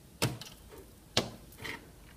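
Two short, sharp clicks about a second apart, then a soft brushing sound.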